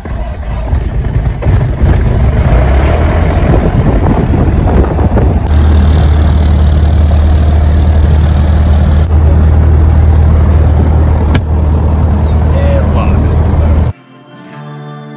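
Piper Archer's four-cylinder Lycoming engine starting: it catches and builds up unevenly over the first couple of seconds, then runs steadily, very loud inside the cockpit. It is a little louder and hissier from about five to nine seconds in, then cuts off suddenly at the end.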